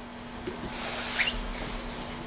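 Room tone: a steady low hum, with a short soft hiss about a second in.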